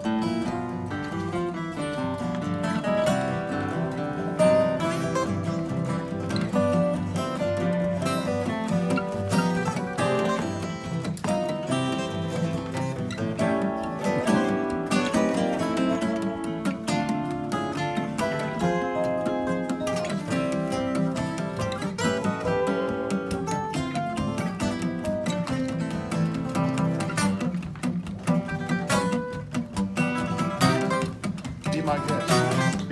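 Four acoustic guitars played together in an informal jam, the music running on without a break.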